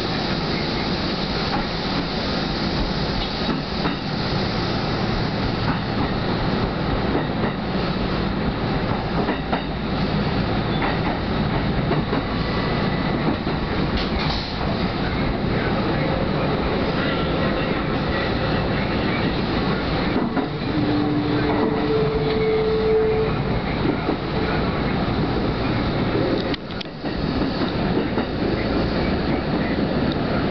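Kintetsu electric commuter train running, heard from inside the front car: a steady rumble of wheels on rails with clattering over rail joints and points, and a couple of short steady tones about two-thirds of the way through.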